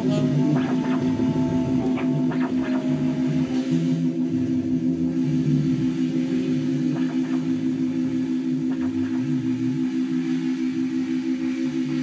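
Live band playing an instrumental passage without vocals: a steady low drone holds under a moving bass line, with guitar on top. A few higher held notes fade out in the first few seconds.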